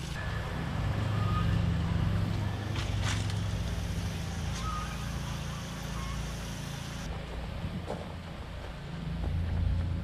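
A steady low motor hum under an even wash of noise.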